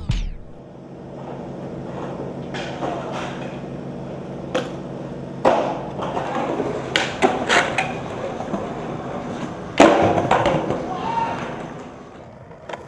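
Skateboard rolling with a steady wheel hum, broken by a series of sharp clacks and knocks of the board hitting the ground, the loudest about ten seconds in.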